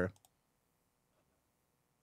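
Near silence after a spoken word ends, with a faint quick double click of a computer mouse about a quarter second in.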